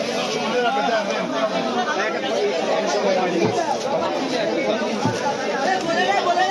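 Busy market chatter: many voices of vendors and shoppers talking over one another at once, steady throughout.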